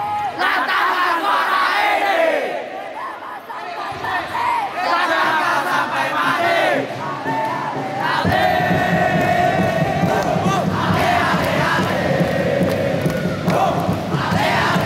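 Crowd of school futsal supporters shouting and chanting. About eight seconds in, the noise swells into a louder, sustained massed chant.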